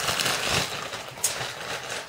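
Clear plastic bag crinkling and rustling as it is handled, with a few sharp crackles and one distinct snap about midway.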